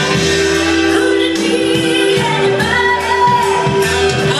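A woman singing karaoke into a microphone over a pop backing track, on long held notes.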